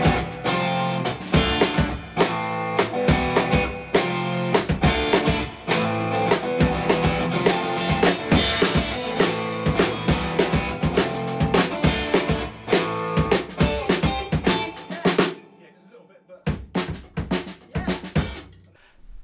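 A drum kit and an electric guitar playing a song together with a driving beat; the drums and cymbals are damped with cloths laid over them. The playing stops about fifteen seconds in, followed by a few loose drum hits.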